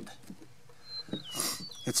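A few faint, thin, high chirps from a small bird in the background, one note sliding downward, in the second half. Early on there are light clicks of polymer pistols being handled and set down on a wooden table.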